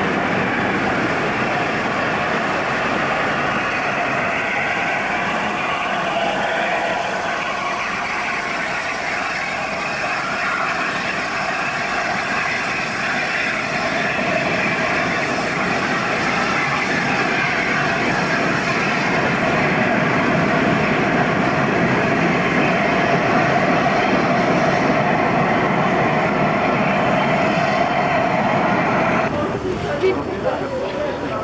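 Steam-hauled train moving past behind an LNER A4 Pacific locomotive: a steady, loud rushing noise of the train on the move, with no distinct exhaust beats. It changes abruptly near the end.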